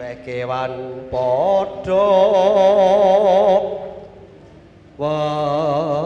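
A man singing a Javanese-style vocal line through a microphone, long held notes with a wide vibrato; a long wavering phrase runs to about three and a half seconds in, a short pause follows, and a new held phrase starts at about five seconds.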